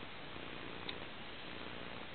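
Faint, steady outdoor background noise with one soft click a little before the middle.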